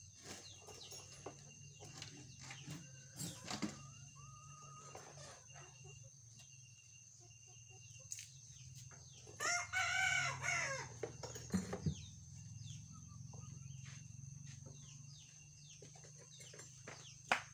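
A single long, loud animal call with a rich, slightly falling pitch lasting about a second and a half, coming about ten seconds in. Scattered faint clicks and ticks and a low steady hum run under it.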